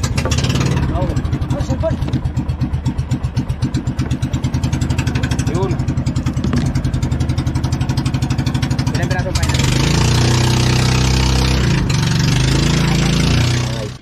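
Outrigger boat's inboard engine running with a fast, even beat, then throttled up about nine seconds in, the sound growing louder and rougher.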